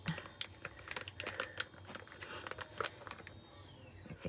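Foil mask pouch crinkling as it is squeezed and handled, a run of light, irregular crackles and clicks.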